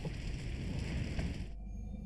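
Anime film soundtrack: a steady rush of burning fire mixed with music, cut off suddenly about a second and a half in, leaving a quieter low hum.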